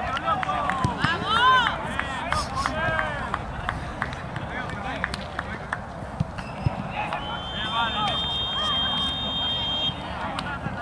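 Players' voices shouting and calling to each other across an outdoor football pitch. A long, steady, high whistle-like tone comes in at about seven seconds and holds to the end.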